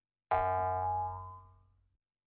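A short outro sound-logo sting: one sudden, ringing musical hit about a third of a second in that fades away over about a second and a half.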